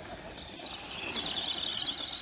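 High-pitched whine of an RC truck's brushless electric motor, starting about half a second in, its pitch wavering up and down.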